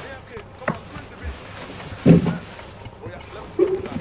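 Handling noise of groceries in a cardboard box: rustling, with a sharp click just under a second in, as a plastic-wrapped pack of toilet rolls is lifted out. A brief vocal sound comes a little after two seconds in.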